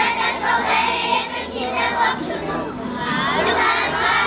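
A group of young children's voices in unison, a class singing together.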